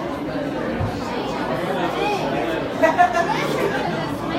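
Audience chatter: many voices talking over one another in a crowded room, with a brief louder voice about three seconds in.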